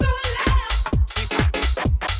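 Electronic dance music played through a DJ mix: a steady four-to-the-floor beat of about two kicks a second, with heavy bass and busy hi-hats.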